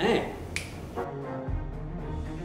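A man's spoken line ends, followed by a sharp click. Then comes the drama's background music: held tones, joined about a second and a half in by a deep low note.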